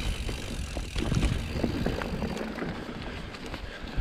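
Mountain bike rolling down a dirt singletrack: a steady rumble of the tyres on the trail, with the bike rattling and clicking over bumps, loudest about a second in.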